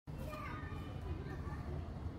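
Distant children's voices in the background, high-pitched calls and chatter, over a steady low rumble.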